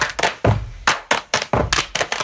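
Body percussion by a group: hand claps and slaps on the body in a steady rhythmic groove, about four sharp strikes a second, some with a deep thud.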